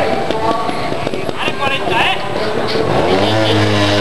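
Spectators talking, then about three seconds in a trials motorcycle engine revs up and holds a steady note.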